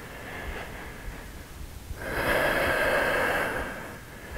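A man's long audible exhale, a breathy rush of air starting about halfway through and lasting about a second and a half, after a quieter stretch of breathing.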